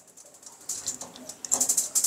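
Rapid clicking of a gas oven's spark igniter as the oven knob is pressed and turned to light the burner, starting partway in.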